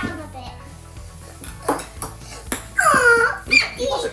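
A home game of table tennis on a wooden coffee table: a few light, sharp taps of the ping pong ball against paddles and tabletop. A child gives a loud excited squeal about three seconds in.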